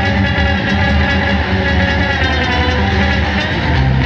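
Loud, dense instrumental jazz-rock: saxophone, electric bass and drums playing together without a break.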